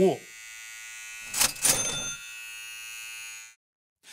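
Electric clippers buzzing steadily, with a brief louder burst of sound in the middle; the buzz cuts off suddenly about three and a half seconds in.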